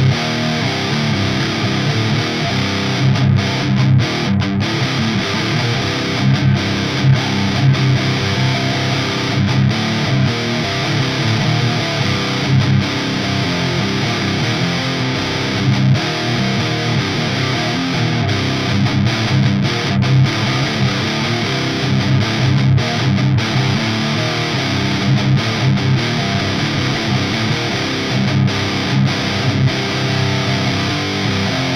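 Heavily distorted electric guitar playing heavy metal riffs steadily throughout.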